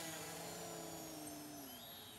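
Small electric motor and quadcopter propeller of a foam RC plane whining faintly overhead, fading and falling slowly in pitch.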